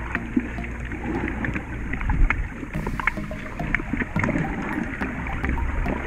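Underwater sound picked up by a submerged camera: a muffled, low rumble of moving water with many small sharp clicks scattered throughout and a few louder knocks about two seconds in.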